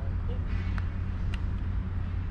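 Steady low outdoor rumble, with two short, light clicks about half a second apart near the middle.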